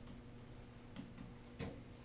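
A few light clicks of a stylus tapping the writing surface while writing, over a faint steady electrical hum.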